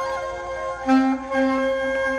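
Solo saxophone playing long held notes; a lower note comes in about a second in and is the loudest moment.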